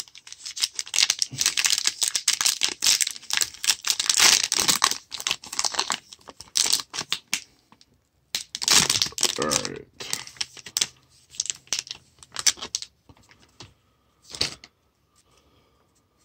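Plastic wrapper of a 2018 Topps Series One baseball card pack being torn open and crinkled by hand: a dense, busy crackle of wrapper for about thirteen seconds, then a few scattered clicks as the cards come out.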